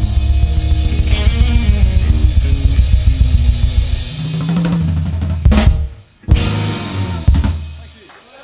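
Live blues trio of Stratocaster-style electric guitar, bass guitar and drum kit playing the ending of a song. About five and a half seconds in the band stops on a loud hit, then strikes final accented chords with drums and cymbals that ring and fade out near the end.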